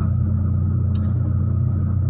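Steady low rumble of a car heard from inside the cabin, with one faint click about a second in.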